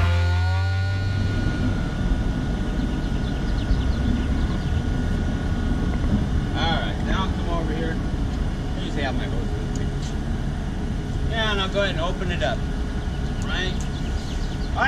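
Steady low rumble of a concrete mixer truck's diesel engine running, with a man's voice breaking in briefly a few times in the second half.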